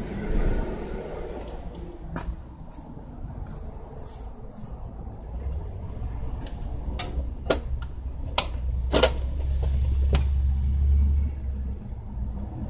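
Sharp clicks and clunks as the seat of a 1978 Honda CB400 Hondamatic motorcycle is unlatched and lifted off, a handful of separate knocks, the loudest about nine seconds in. Under them runs a low rumble that grows stronger in the second half.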